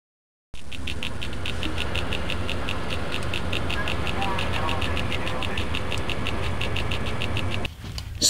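Electronic intro sound bed: a steady low drone with a fast, even high ticking pulse of several ticks a second. It starts about half a second in and cuts off just before the end.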